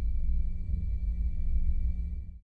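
Cinematic logo-intro sound effect: a deep, steady rumbling drone with a faint high steady tone above it, easing slightly near the end.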